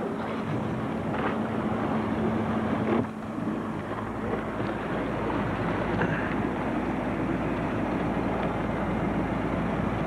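Motorboat engine running with wind on the microphone. About three seconds in, the steady engine hum drops out and an even rush with a deep rumble takes over.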